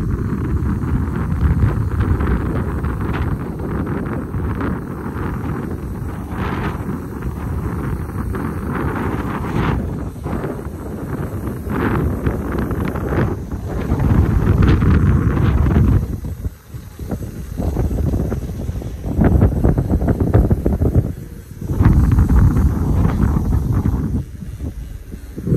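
Wind buffeting the microphone of a camera riding on a moving bicycle: a loud, steady rumble that swells and eases in gusts and dips briefly twice in the later part.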